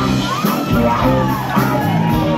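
Live rock band playing: a woman singing over electric guitars, bass and drums.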